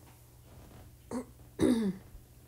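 A woman clearing her throat: a short sound about a second in, then a louder one near the end with a falling pitch.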